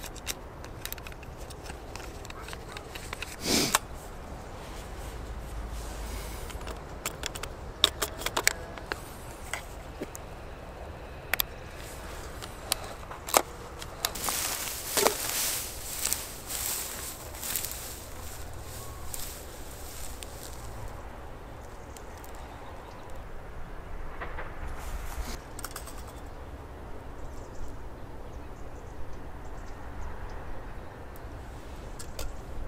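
Hands loading a roll of 120 film into a Mamiya RB67 film back: a series of sharp clicks and snaps of the back's parts, with the foil film wrapper crinkling. About halfway through, several seconds of rustling and crackling as someone walks through tall dry grass.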